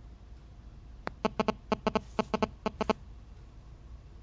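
An animal giving a quick run of about a dozen short, pitched calls over about two seconds, starting about a second in.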